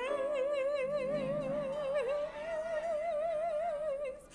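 A gospel singer holding one long high note with a wide, even vibrato for about four seconds.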